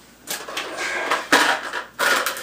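Loose steel screws and small metal parts being handled: scraping, rubbing and light clatter, with a sharper knock about a second and a half in.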